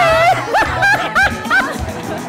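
A woman laughing in four or five quick, high-pitched bursts, over background music.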